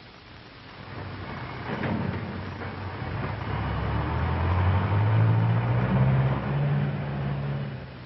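Heavy truck engine running as the truck drives close past, growing louder. Its low note steps up in pitch a couple of times, and the sound cuts off suddenly near the end.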